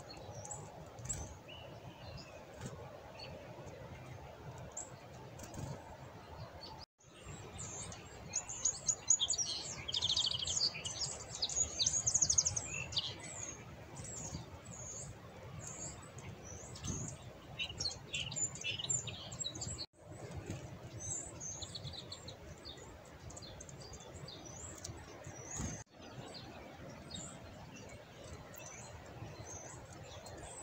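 Black-capped chickadees calling with short, high, thin chirps: a busy flurry of calls a few seconds in, then scattered calls for the rest of the time.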